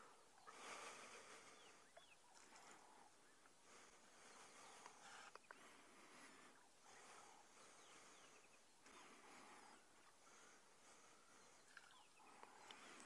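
Near silence of open bush: faint outdoor ambience with faint, scattered bird calls.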